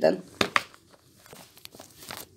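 A woman's voice finishes a word, then two sharp clicks come about half a second in, followed by faint scattered ticks and rustles.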